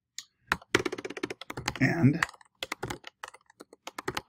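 Typing on a computer keyboard: a quick run of keystrokes, then scattered single keys. A voice murmurs briefly about halfway through.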